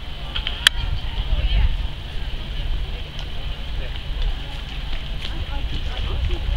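Low, buffeting rumble of wind on the camera microphone, with faint voices in the background and a single sharp click about two-thirds of a second in.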